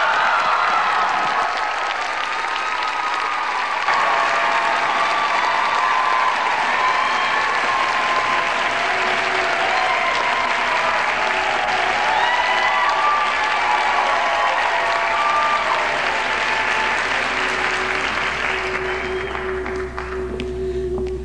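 Audience applauding steadily, with scattered voices cheering, dying away near the end.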